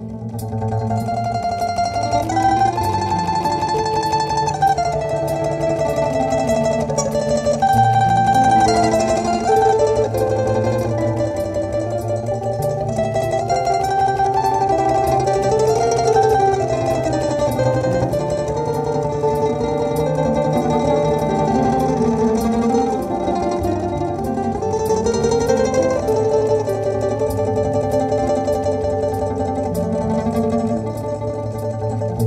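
Domra played with a pick: a moving plucked melody over held low bass notes and looped accompaniment layers from a loop processor.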